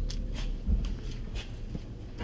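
Footsteps and handheld camera handling: a few short scuffs and clicks, with a soft thump at about three-quarters of a second, over a low steady rumble.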